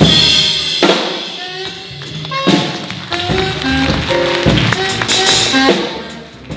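Big-band jazz orchestra playing: the horn sections punch out short ensemble accents, each backed by a hit from the drum kit, with held horn notes between them.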